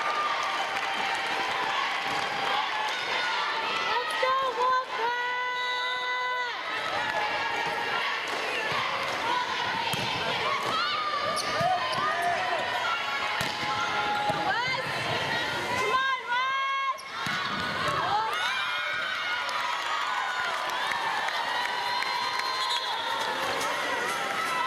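Indoor volleyball gym sound: crowd voices, sneakers squeaking on the hardwood court and the ball being struck during play. Two longer held tones stand out, one about five seconds in and another around sixteen seconds.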